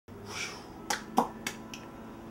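A short hiss, then four sharp snaps from a man's hands in quick succession, about a quarter second apart; the last is the faintest.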